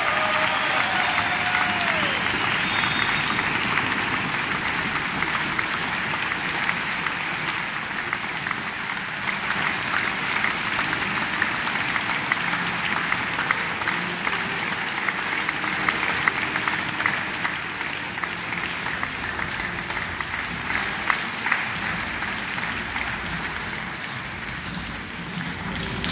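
Audience applauding: a long, steady round of clapping that eases off slightly toward the end.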